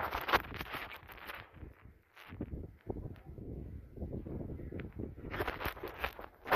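Handling noise from a handheld camera being swung about: irregular rustling and knocks at the start and again near the end, with a low rumble in between. Soft footsteps on a tile floor are heard among them.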